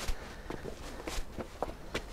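Footsteps of people climbing concrete stairs, several uneven steps in a row.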